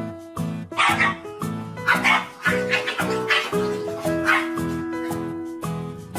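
A dog barking several times, in short bursts between about one and four and a half seconds in, over background music with a steady beat.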